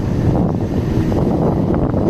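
Wind buffeting the microphone on a moving motorbike, over a steady low rumble of engine and road noise.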